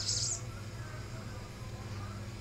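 A small bird gives a brief, high chirp right at the start, then only faint chirps follow.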